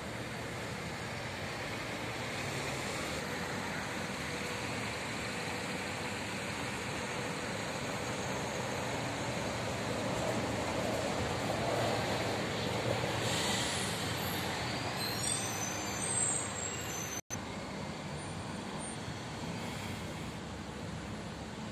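Street traffic with a city bus driving past close by, its engine and tyres growing louder around the middle and then fading.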